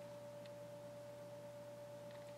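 A faint steady tone at one unchanging pitch, with a low steady hum beneath it.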